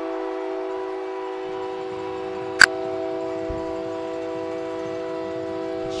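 Arena goal horn sounding one long, steady multi-note chord, the signal that a goal has just been scored. A single sharp click comes about two and a half seconds in.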